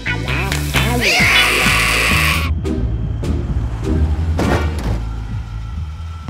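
Cartoon background music, with a character's short strained vocal sounds early on. A hissing sound effect starts about a second in and cuts off sharply after about a second and a half.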